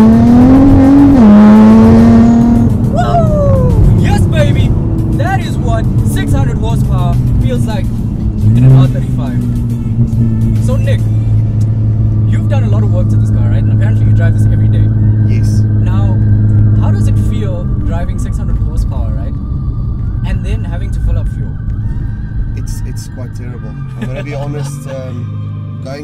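Straight-piped Nissan GT-R R35's 3.8-litre twin-turbo V6, heard from inside the cabin, pulling hard with its pitch climbing, then dropping about a second in at an upshift. A short loud surge follows near the ninth second, then the engine settles into a steady low drone that eases and grows quieter over the last several seconds.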